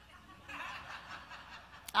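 A congregation laughing softly together, a diffuse wash of chuckles that swells about half a second in and fades near the end.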